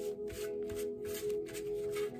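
Small paper word cards being scooped up and shuffled together by hand on a metal tray: a rapid papery rustling, several strokes a second, over steady background music.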